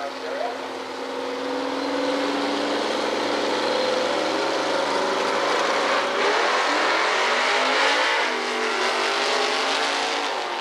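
Drag race cars' engines running at the starting line, held at steady revs for several seconds. About six seconds in the sound changes and grows fuller and louder as the cars leave the line.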